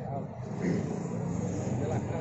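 Steady traffic noise from a busy city street, with faint voices talking in the background.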